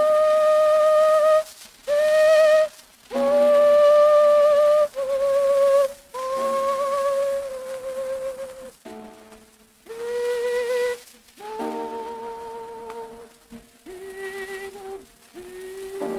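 Soprano voice singing long held notes with vibrato and short breaks between phrases, the line moving lower toward the end, with piano accompaniment, from a 1904 acoustic Victor shellac disc. Faint surface hiss lies under the voice.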